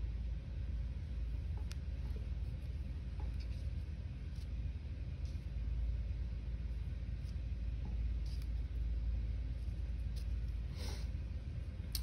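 Quiet room with a steady low hum, and a few faint light taps and rustles of a paint-covered leaf being pressed onto paper as a stamp.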